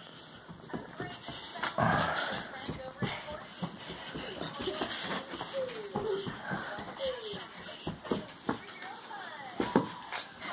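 Small children's wordless vocal sounds, short squeals and calls, with the shuffling and light knocks of a toddler running on carpet.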